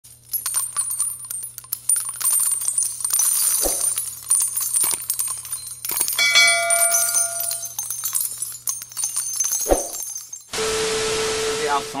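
Channel-intro sound effects: a high, glittering shimmer with scattered clicks and a couple of low thumps, then a bell-like notification chime ringing for about a second and a half midway as the subscribe bell is clicked. A flat burst of static hiss with a steady tone fills the last second and a half.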